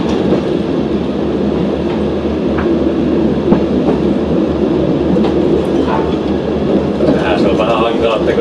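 VR Dm7 'Lättähattu' diesel railbus running along the track, heard from inside: a steady diesel engine and wheel-on-rail noise, with a few sharp clicks from the rails.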